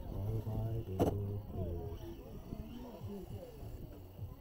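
Muffled voices talking, with a single sharp knock about a second in.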